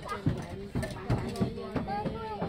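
Quick footsteps knocking on wooden deck planks, several a second, with children's voices over them.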